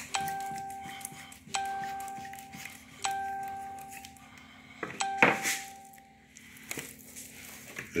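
A bell-like chime on one pitch sounds four times, about a second and a half apart, each ring fading away over about a second. A short, louder noise follows just after the fourth chime.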